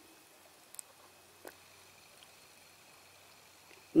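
Near silence: faint room tone with two faint short ticks, about a second and a second and a half in.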